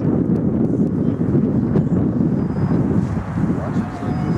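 Wind buffeting the camera microphone: a loud, steady, low rumble.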